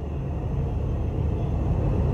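Steady low-pitched rumble with no speech over it.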